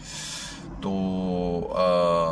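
A man's voice, pausing to think: a short breathy hiss, then a long drawn-out "toh…" and a held "aah" filler, each at a steady pitch.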